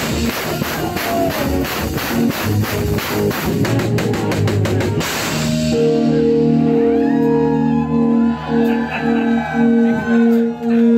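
Loud live rock-rap music with a fast, steady drum beat that stops about halfway through, giving way to a held, droning chord with voices shouting over it.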